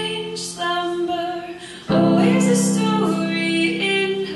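A woman singing a slow song, accompanying herself on a digital piano. A held chord dies away, and a new, louder chord is struck just under two seconds in while the voice carries the melody.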